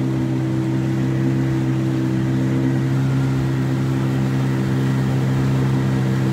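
Boat motor running steadily at constant speed, a low even hum.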